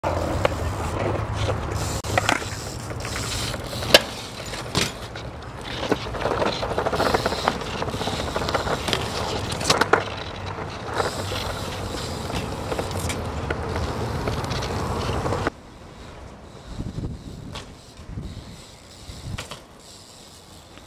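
BMX bike tyres rolling over brick and concrete pavement, a steady rumble full of rattles and clicks from the bike, with sharp knocks about four seconds in and again near ten seconds. About three-quarters of the way through, the rolling noise cuts off abruptly, leaving much quieter scattered knocks.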